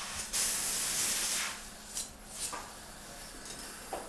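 Dental air-water syringe spraying to rinse the site: one strong hiss of a little over a second, then two short spurts.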